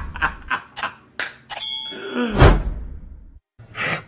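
Animated logo-intro sound effects: a quick run of swishes and sharp hits, a brief bell-like ding about a second and a half in, and a heavy hit with a low boom a second later, then a moment of silence.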